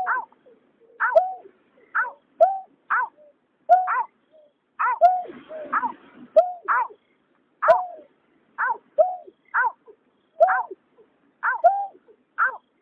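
Greater painted-snipe calls: short, sharply downward-sliding notes, mostly in pairs, repeated a few times a second without a break. A brief hiss runs under the calls about halfway through.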